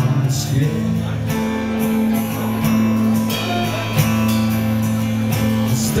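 Live acoustic guitar strumming in an instrumental passage of a song, with steady low notes held underneath.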